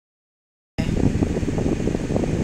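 Silence for most of the first second, then a steady low rumble and rush of air inside a parked car's cabin.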